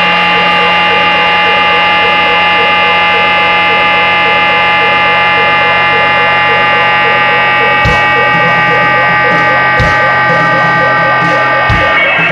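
Noise punk played on bass and drums: a loud, distorted electric bass held ringing in one sustained buzzing drone, with three scattered drum hits in the second half.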